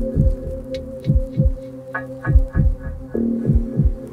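Heartbeat sound effect over a low, sustained suspense drone: paired beats, a pair a little over once a second.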